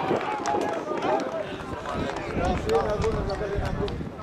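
Several voices shouting and cheering over one another in celebration of a goal, with scattered short sharp clicks.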